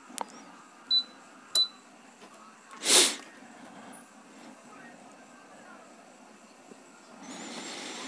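Two short beeps from the control panel of a Nasan LCD separator heating plate, about one second in and again half a second later, as its temperature is set to 80 °C. About three seconds in comes a single short, loud hiss. Otherwise there is only a low steady background.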